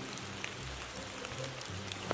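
Rain falling steadily, an even hiss of patter with no single drops standing out.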